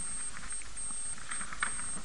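A pause in speech holding only the recording's steady background hiss, with a thin high-pitched whine that keeps cutting in and out.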